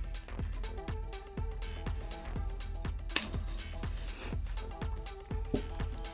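Soft background music, with light metallic clinks of galvanized steel wire being handled and one sharp, loud snip about three seconds in as wire cutters cut through the wire.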